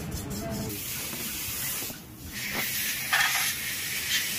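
Steady hiss and scrubbing as a scooter's variator and roller weights are cleaned in a tray of solvent, dipping briefly about halfway and swelling louder near the end.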